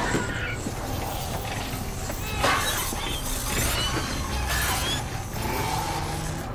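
Action-film fight sound effects: several sharp crashing, metallic impacts over a steady low rumble, the loudest about two and a half seconds in.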